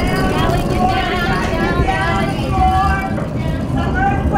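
Loud, continuous low rumble of a simulated earthquake, with several people's voices raised over it.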